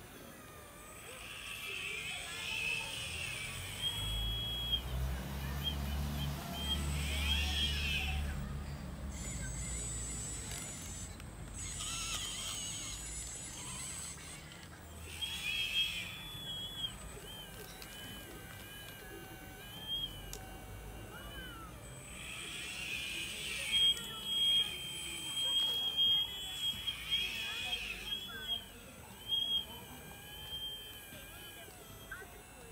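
Electric motors of a radio-controlled Liebherr 960 model excavator whining in short runs, each lasting a second or a few, as the boom, arm and bucket dig into soil. A few sharp clicks come near the end.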